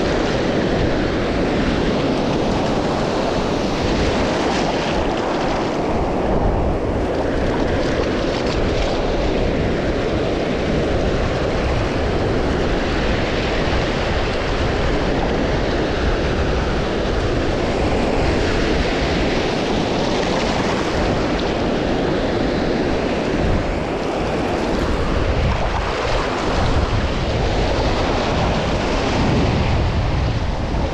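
Ocean surf breaking and washing through shallow water close around the microphone, a steady rushing wash, with wind buffeting the microphone.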